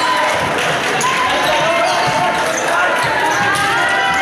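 Crowd chatter and shouts in a large echoing gymnasium, with sneakers squeaking on the court floor and scattered thuds of footsteps and ball during volleyball play.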